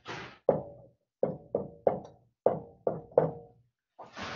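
Marker writing on a wall-mounted whiteboard: a short scratchy stroke, then about seven sharp taps with a brief ring as the marker tip strikes the board for each digit and comma.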